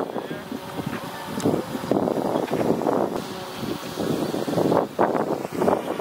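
Indistinct voices with wind buffeting the microphone.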